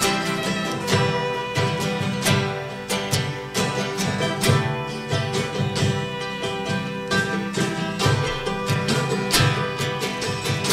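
Steel-string acoustic guitar strummed in a steady rhythm, chords ringing between the strokes.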